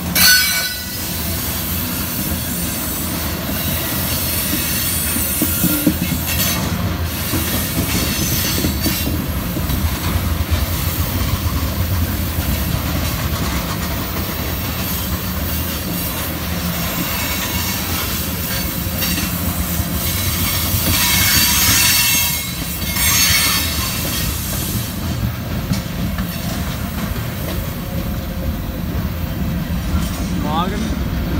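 Freight train tank cars and boxcars rolling past close by: a steady rumble of steel wheels on rail with wheel squeal. There is a sharp clank just at the start, and a louder stretch of high-pitched screeching about three-quarters of the way through.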